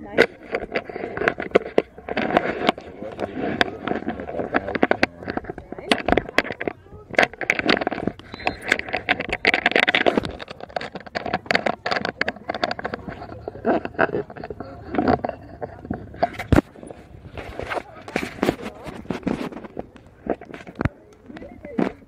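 Indistinct, overlapping voices of players and onlookers chattering, with frequent sharp clicks and knocks scattered through.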